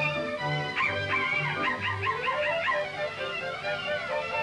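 Cartoon orchestral score with a bouncing bass line. About a second in, a run of quick, high, wavering yips lasting about two seconds, like small dogs yelping.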